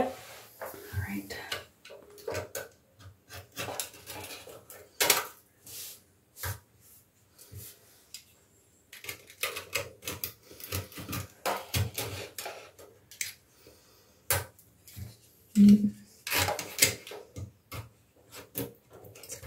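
Utility knife blade scraping and picking at the coating around a bathtub's overflow hole, in short, irregular scratches and clicks. It is lifting loose refinishing paint that has bubbled up over rust underneath.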